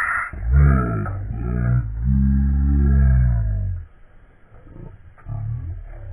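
A person's low, drawn-out wordless vocal sounds close to the microphone: a short one near the start, a long one from about two seconds in to nearly four, and a shorter one near the end.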